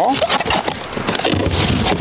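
Cardboard packaging rustling and scraping with a run of sharp knocks and clicks as a 26-inch hub-motor bicycle wheel is pulled out of its shipping box.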